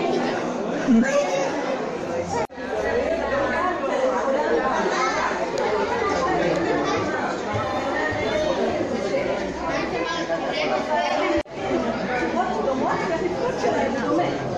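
Several overlapping voices chattering in a large hall, with no single voice standing out; the sound drops out abruptly for a split second twice.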